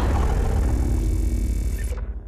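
Sound-effect sting of an animated logo intro: a loud, deep rumble with ringing tones that starts to fade away near the end.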